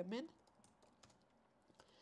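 Faint, scattered keystrokes on a computer keyboard.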